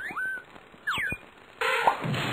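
Cartoon whistle-like sound effects: a short rising glide at the start and a quick falling glide about a second in, followed by a loud, brief burst of noise near the end.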